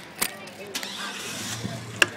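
A vehicle engine running, its low hum swelling louder through the second half, with a sharp knock about a quarter second in.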